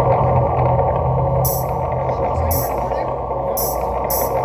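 Live electric bass and keyboard starting a song with a steady distorted drone over a held low bass note, joined about a second and a half in by a high hissing beat that hits roughly once a second.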